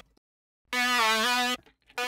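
A bright software-synth lead (a Spire patch bounced to audio) plays one held note of under a second, with a slight dip in pitch partway through. It comes in after a short silence and stops abruptly.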